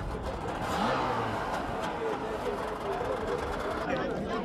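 A boat engine running steadily, with people's voices over it.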